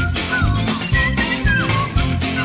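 Rock-and-roll band playing an instrumental passage: lead guitar bending notes over bass and a drum beat about twice a second.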